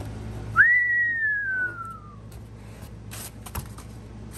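A person whistles one long note about half a second in, jumping up and then sliding slowly down in pitch: an impressed whistle at the sight of the unboxed brake calipers. After it come a few light rustles and clicks of paper packing being pulled off.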